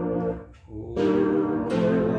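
Chords played on a Roland E-09 arranger keyboard, held so they sound steadily. The first chord dies away about half a second in, and after a short gap a new chord enters about a second in, followed by another near the end.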